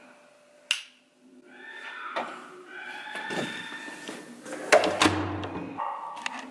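A single sharp click of a wall switch being pressed, then an unidentified sound with several steady high tones. Near the end come a few louder knocks and handling noise.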